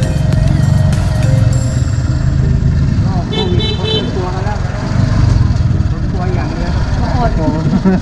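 Steady engine and road rumble of a motorcycle-sidecar taxi, heard from on board. Background music stops about a second and a half in, a short high beeping sounds around three seconds in, and voices talk over the rumble in the second half.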